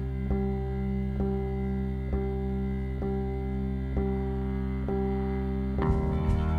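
Live band music from electric guitar and bass: sustained, ringing chords with a note struck again about once a second in a slow, even pulse. The harmony shifts just before the end.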